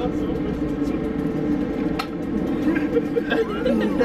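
Indistinct voices over a steady mechanical hum, with one sharp click about two seconds in.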